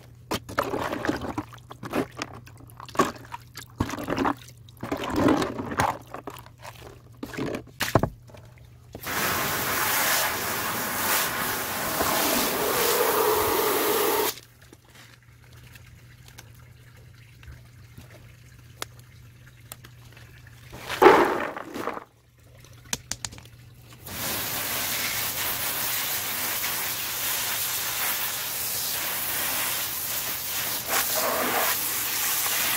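Muddy wash water sloshing and splashing in a plastic tub as harvested peanuts are scooped out with a plastic colander, then a few seconds of steady pouring water. After a quieter stretch and one short loud noise, a garden hose sprays with a steady hiss for the last few seconds.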